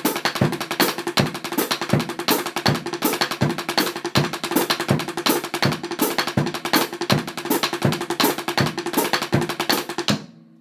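Drumsticks playing the paradiddle-diddle rudiment at a fast tempo on a drum, a quick, even stream of strokes with accents, cutting off right at the end.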